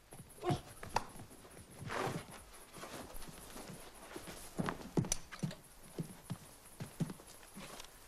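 Irregular knocks and thuds on wooden boards, a dozen or so spread unevenly, the loudest about half a second and five seconds in.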